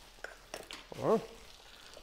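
Two eggs frying in butter in a stainless steel pan: faint sizzling with a few small crackles. A short "oh" about a second in.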